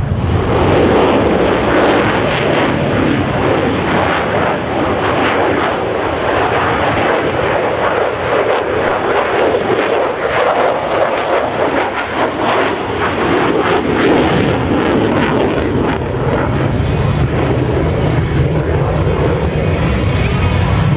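Loud, continuous jet noise from a USAF F-16 Fighting Falcon's single jet engine as the fighter flies past in a display.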